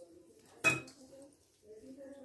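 A single sharp clink of stainless steel kitchenware, a steel bowl struck, about two-thirds of a second in, with a short ring after it.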